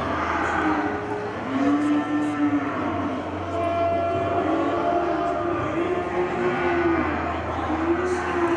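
Cattle mooing: several low, drawn-out calls, one after another, over a steady low hum.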